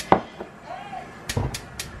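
Sharp clicks and knocks of kitchen handling at the stove: one right at the start, then a quick run of four or so about a second and a half in.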